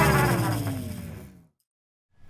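Intro music ends with its last sound sliding down in pitch and fading out, cut off to silence about a second and a half in.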